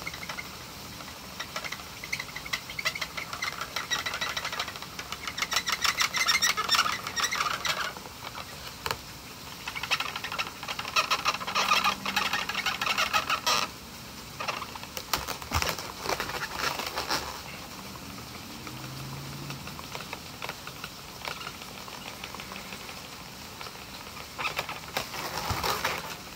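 Black felt-tip marker squeaking and rubbing on an inflated latex balloon while a patch is coloured in, in several bursts of quick back-and-forth strokes a few seconds long. The strokes ease off after about two-thirds of the way through.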